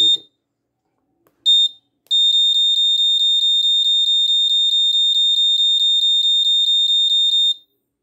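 Piezo buzzer on an Arduino board giving high-pitched beeps as its push buttons are pressed: a single short beep about a second and a half in, then a rapid run of about four beeps a second for some five seconds while a button is held to step the year setting, stopping suddenly near the end.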